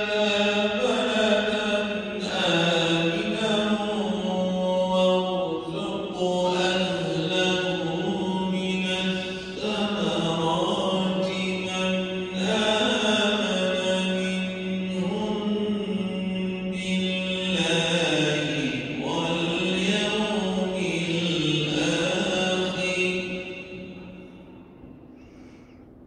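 Quran recitation in Arabic: a single voice chanting long, melodic phrases with held, ornamented notes. The recitation stops near the end, leaving only quiet room sound.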